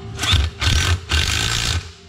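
A handheld power tool running in three short bursts, the last the longest, as it is pressed onto the valve springs of a cylinder head to fit them.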